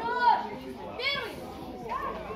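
Young voices shouting: two short, high-pitched calls about a second apart, the first the loudest, over background chatter.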